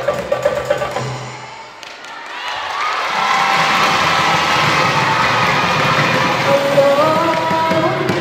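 Marawis ensemble of girls singing with hand-drum accompaniment; the drum strokes stop about two seconds in. After a brief lull the voices go on in long held and sliding notes over a noisy background, without the drums.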